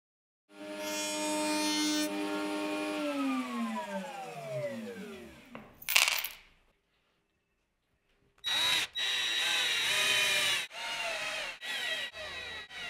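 A router-table motor running steadily, then winding down after switch-off, its pitch falling over two or three seconds, followed by a short noisy burst. From about eight and a half seconds, a cordless drill runs in several short bursts, driving screws into a wooden frame.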